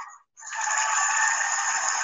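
Live theatre audience applauding at the end of a song. The last sung note cuts off, there is a moment's gap, and the applause comes in about half a second in and keeps going steadily.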